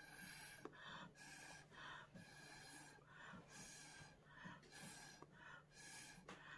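Short puffs of breath blown through a drinking straw onto wet alcohol ink, about two a second, soft and breathy.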